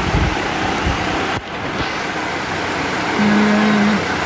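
Steady rushing noise of a fan close to a phone's microphone, with a few low bumps at the start and a brief break about a second and a half in. Near the end a steady low hum comes in and is the loudest thing heard.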